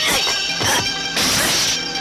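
Old kung-fu film soundtrack: orchestral music under dubbed fight sound effects, with a sharp hit at the start and a loud crash just past halfway.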